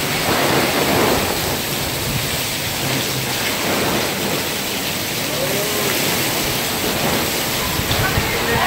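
Heavy wind-driven downpour, a dense steady hiss of rain pelting a fabric gazebo canopy and the ground around it.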